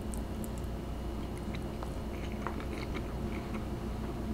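A person chewing a big mouthful of noodles: faint, scattered wet mouth clicks over a steady low hum.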